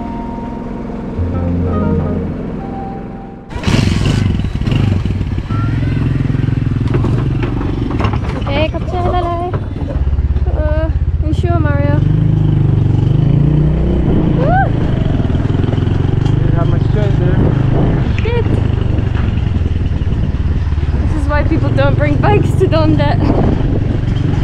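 Background music for the first few seconds, then a small motorbike engine running steadily as the bike rides along a dirt track, with voices over it at times.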